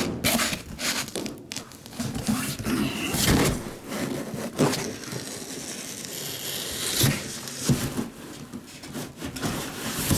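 A cardboard case scraping and rubbing as it is handled and slid about on a table, with rustling and a few sharp knocks.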